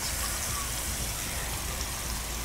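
Smash burger patties sizzling steadily in hot grease on a flat-top griddle.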